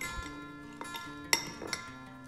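Soft acoustic guitar background music with three or four light clinks of a metal fork against a ceramic bowl as green beans are stirred, the sharpest about halfway through.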